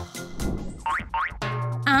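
Comic cartoon sound effects: a few quick rising boing-like glides in pitch over light background music.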